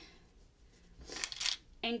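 Quilt fabric and binding rustling as the binding is folded over and clipped, a short rustle starting about a second in.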